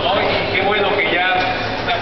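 A man's voice speaking into a handheld microphone, continuing an address to a crowd.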